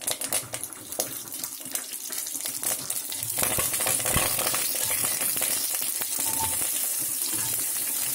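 Tempering in hot oil in an aluminium pressure cooker: mustard seeds and curry leaves crackling with many small pops at first, giving way to a steadier, louder sizzle from about three seconds in. Chopped onions go in and are stirred with a metal ladle near the end.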